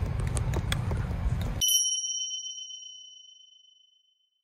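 Outdoor background noise with a low rumble cuts off abruptly. A single bright bell-like ding follows as an editing sound effect and rings out, fading over about two seconds.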